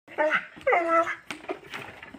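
A dog giving two short, pitched yelps, the second longer and steadier, followed by a couple of faint knocks.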